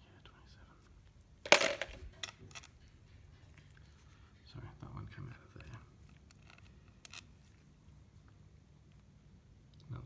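Loose steel bolts and tools being handled over a transmission valve body: one sharp metallic clink with a short ring about a second and a half in, then a few lighter clicks and soft handling sounds.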